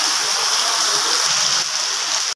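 Heavy rain falling, with water pouring off tarpaulin awnings onto a flooded paved lane: a steady, loud hiss.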